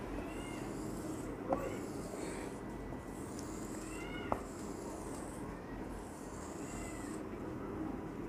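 Marker drawing long strokes across a whiteboard: a scratchy rasp with each stroke and several short squeaks that rise and fall in pitch. There are two sharp taps, one about one and a half seconds in and one about four seconds in.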